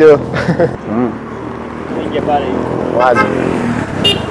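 Roadside traffic noise with a motorcycle engine running close by, under scattered men's voices.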